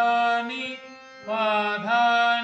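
A man singing Indian sargam syllables over an Amrit harmonium, the reed tones held under his voice as it steps from note to note. One sustained note opens, the sound drops back around the middle, and the next note comes in strongly about a second and a half in.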